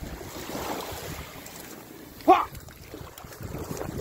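Shallow surf washing over sand at the water's edge, with wind on the microphone. A short voice exclamation cuts in about two seconds in.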